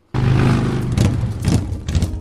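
Motorcycle engine revving loudly, starting abruptly a moment in.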